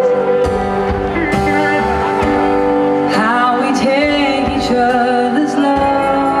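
Live rock band playing a slow ballad, with electric guitars, drums and held chords. About three seconds in, a melody line bends and wavers in pitch.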